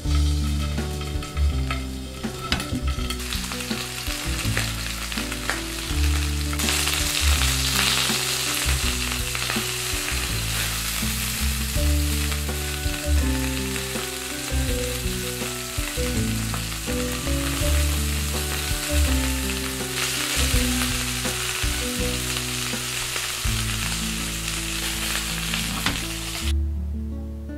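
Chicken drumsticks frying in hot oil in a nonstick pan: a sizzle that starts about three seconds in and grows louder a few seconds later, over background music.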